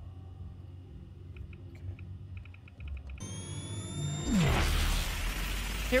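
Sci-fi film sound effects of a laser powering up. A few short electronic ticks come first. About three seconds in, a rising electronic whine begins, and about a second later it breaks into a loud rushing noise with a deep rumble and a falling low tone.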